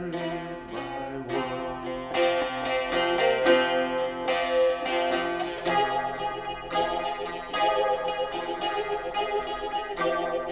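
Sharkija, a long-necked Balkan lute, plucked in a quick run of notes that ring over held, droning tones.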